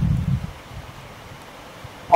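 A brief low rumble on the microphone in the first half-second, then faint rustling of a pen writing on paper.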